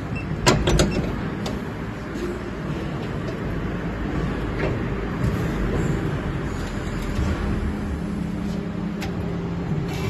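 Injection moulding machine running with a steady low hum. A few sharp clunks about half a second in, as the green safety gate slides shut in front of the mould.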